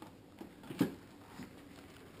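Handling noise: a few light knocks and one sharper knock a little before the middle as a large wrapped chocolate slab is moved on a kitchen scale.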